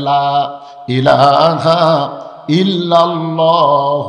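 A man's voice chanting in a drawn-out melodic sermon tune. There are three long held phrases with short breaks between them.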